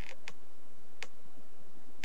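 A few sharp, isolated clicks from the computer input used to handwrite equations into a drawing program: one near the start, another a quarter second later and one about a second in. They sit over a steady background hiss.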